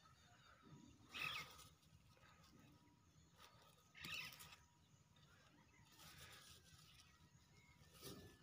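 Near silence, broken by two faint, brief rustles of grass about one and four seconds in.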